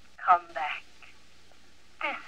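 A voice speaking a short phrase that sounds thin, with no low end, as if filtered.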